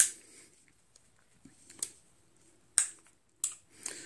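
A few sharp, irregularly spaced metallic clicks from a Ruger Blackhawk .357 Magnum single-action revolver being handled, with the loudest click at the very start.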